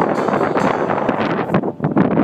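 Wind buffeting the microphone: a loud, rough rush that dips briefly near the end.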